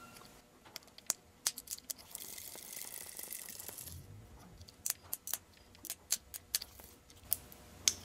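A loose drill bit, worked by hand inside a Bic lighter's body, chipping and scraping at the plastic reinforcing wall: a string of small sharp clicks, with a couple of seconds of scratchy scraping in the middle.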